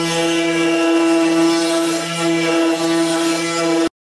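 Electric wood router running at a steady pitch, a loud even whine, while routing the faces of a wooden guitar neck blank flat. It cuts off abruptly just before the end.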